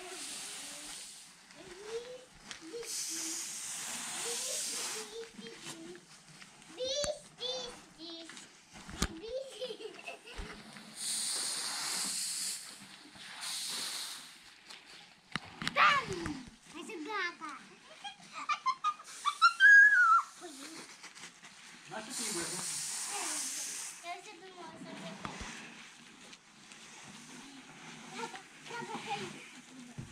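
Harvested grain poured from a bucket onto a tarp, a rushing hiss of kernels heard three times for about two seconds each, with voices in between.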